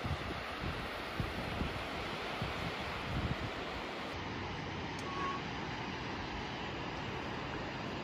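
Steady rushing of Barron Falls heard across the gorge, with wind buffeting the microphone, most in the first few seconds.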